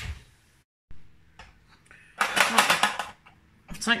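A loud burst of metallic clattering lasting about a second, from a metal roasting tin being taken out of the oven and set down on the hob. A faint low hum comes before it.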